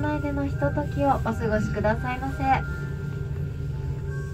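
A voice speaking for the first two and a half seconds, then faint steady tones of background music, over a continuous low hum inside a moving ropeway gondola.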